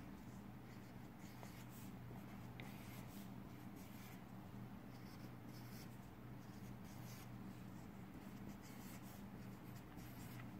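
Felt-tip marker writing on paper, faint and in short strokes, as small circles and letters are drawn, over a low steady hum.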